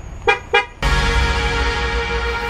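Two quick car horn toots, a fraction of a second apart. Then, just under a second in, electronic music with a heavy low end begins and carries on.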